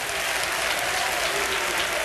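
Congregation applauding: a dense, steady wash of many hands clapping.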